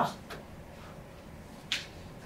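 A pause in speech: quiet room tone after the last word of a man's sentence, broken by a faint click early on and a short sharp hiss near the end.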